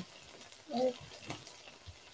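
Garlic scapes frying faintly in an electric skillet, a low steady sizzle. A short vocal sound a little under a second in, and a couple of light clicks.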